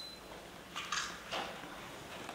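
Quiet hall room tone with a short faint high squeak at the very start, then two soft brief rustles about a second in and half a second later.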